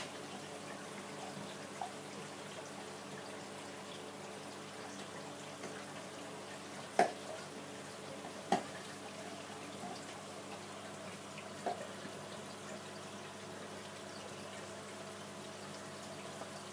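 Aquarium system running: steady trickling and bubbling water over a faint steady hum of pumps, with three sharp clicks about seven, eight and a half and twelve seconds in.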